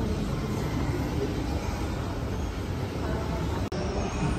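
Steady low rumble of indoor shopping-mall ambience with faint distant voices, broken for an instant near the end.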